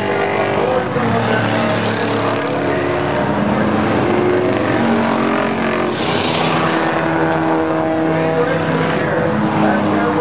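A pack of stock cars racing on a paved oval, many engines running hard at once in overlapping drones whose pitches rise and fall as the cars pass. The sound swells briefly about six seconds in.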